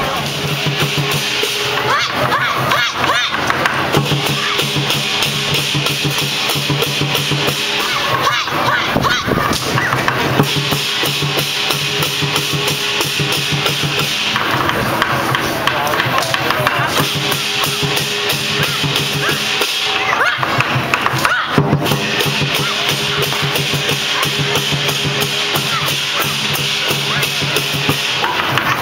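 Chinese lion dance percussion: a large drum beaten in a fast, steady rhythm with clashing cymbals, playing continuously in repeating phrases of a few seconds each.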